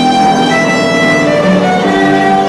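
Violin played with the bow: a melody of held notes that change pitch every half second or so.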